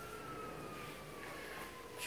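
Quiet outdoor background with one faint, thin, high tone that slowly and steadily falls in pitch.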